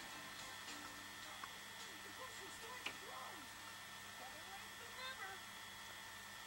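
Faint soundtrack of a VHS tape played back on a television: a steady electrical hum throughout, with a few faint gliding vocal sounds about two to three seconds in and again near the end.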